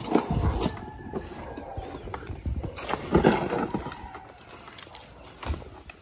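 Irregular knocks and creaks of a pole ladder propped against a tree as someone climbs it, with the loudest knocking about three seconds in.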